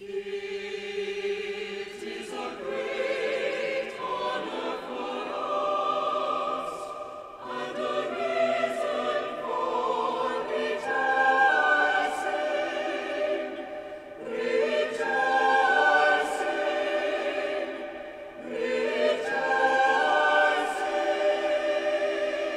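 A choir singing in long held phrases of a few seconds each, with many voices together. It begins suddenly at the very start.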